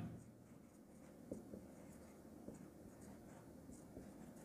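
Faint marker-pen strokes on a whiteboard: soft scratching and a few light taps as words are written, over near silence.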